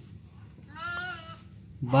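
A single drawn-out bleat from a farm animal, just under a second long, starting about half a second in, heard faintly beneath the room.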